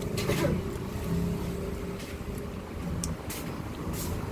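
A steady low motor hum, with a couple of faint wet mouth clicks from licking an ice cream cone.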